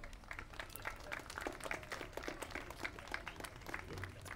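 A small crowd applauding: many scattered hand claps that thin out near the end.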